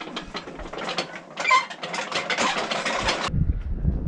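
A rapid mechanical rattling and clicking, many clicks a second, which cuts off suddenly about three seconds in and gives way to a low rumble.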